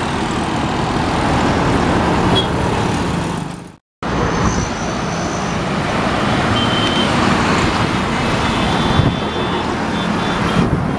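Dense city road traffic heard from within the moving stream: a steady mix of motorcycle, auto-rickshaw and car engines with tyre noise. The sound fades out to a moment of silence just before four seconds in, then comes back abruptly.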